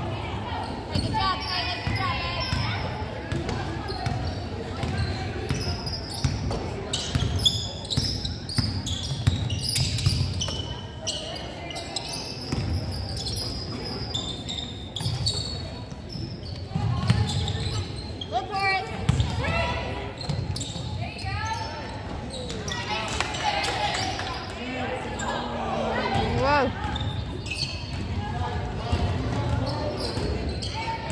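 A basketball bouncing repeatedly on a hardwood gym floor during play, heard in the echo of a large gym, with voices of players and spectators throughout.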